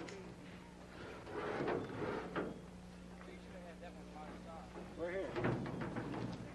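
Aluminum canoe being carried and slid down a concrete ramp, with a few short scrapes and knocks between about one and two and a half seconds in. Faint, indistinct voices follow near the end.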